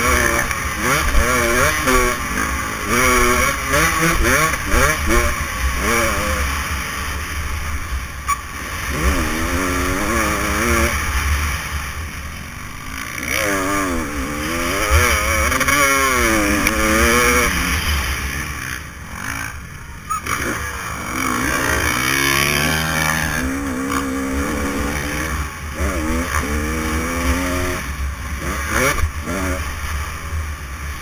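Motocross dirt bike engine revving hard and dropping back again and again as the rider opens and closes the throttle and shifts through the gears, recorded on the bike with constant wind rush. The engine briefly goes quieter a little after the middle.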